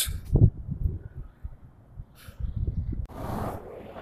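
Wind buffeting the camera's microphone in uneven low gusts, with a handling bump about half a second in and a brief rush of noise about three seconds in.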